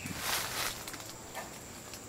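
A small knife shaving a durian scion stem for grafting: soft, scratchy scraping strokes, the strongest in the first half second.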